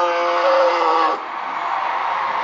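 A man's long, drawn-out shout into a microphone, held on one pitch and breaking off about a second in. Under and after it, a crowd screams and cheers.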